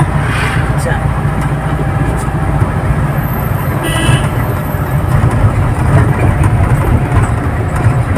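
Steady low engine and road rumble heard inside the cabin of a moving vehicle, with a brief faint high-pitched tone about four seconds in.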